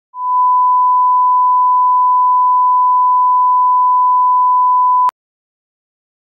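Broadcast line-up tone: a loud, steady 1 kHz sine tone played with SMPTE colour bars at the head of a TV programme master. It lasts about five seconds and cuts off suddenly with a small click.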